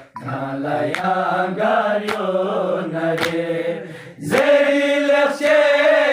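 Balti noha, a Shia lament, chanted with a sharp beat about once a second. After a brief pause at the start the line is sung, and about four seconds in the voice rises to a louder held note.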